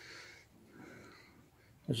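Two faint, soft breaths from the man talking, in a short pause between his words.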